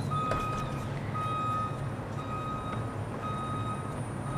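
Vehicle reversing alarm beeping about once a second, four even beeps of about half a second each, over a steady low hum.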